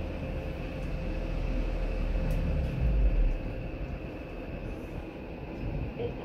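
Orona 3G machine-room-less traction elevator car in motion: a low rumble with a steady high whine over it, which peaks and drops away a little after three seconds in as the car comes to a stop. Near the end the car doors slide open.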